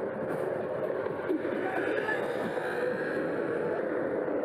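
Steady rush of wind and tyre noise from an electric bike riding along a paved path, with indistinct voices mixed in.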